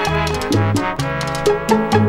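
Salsa band recording in an instrumental passage: a stepping bass line and crisp percussion strikes under sustained chords.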